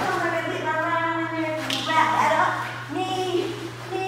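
Indistinct talking in a fairly high voice, with a brief slap or clap a little under two seconds in, over a steady low hum.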